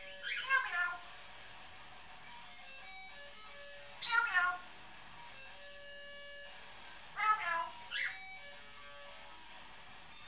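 African grey parrot giving three short calls that fall in pitch, about three to four seconds apart, the last one doubled. Faint electric guitar played through effects pedals sounds behind it from another room.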